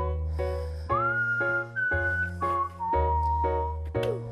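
Background music: a high, whistle-like melody of long held notes over repeated chords, about two a second, and a bass line that changes note about once a second.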